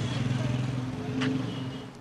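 Street ambience with a motor vehicle engine running steadily, and a brief click a little over a second in.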